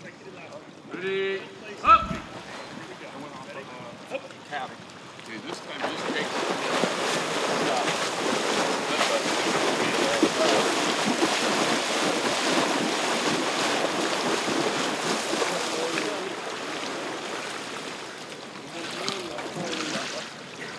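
Several swimmers sprinting freestyle close by, their arms and kicks splashing steadily in the water; the splashing builds about five seconds in and fades away near the end. A shouted start command, "Up," comes about two seconds in.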